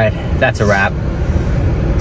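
Steady low rumble of a car cabin, with a short burst of speech in the first second.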